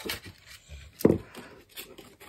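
Art supplies being handled in a wooden art box, with light rustling and a sharp knock about a second in as an item is set down among the paint tubes.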